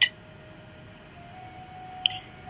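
A pause between speech: faint steady hiss with a faint held tone that steps slightly higher about halfway through.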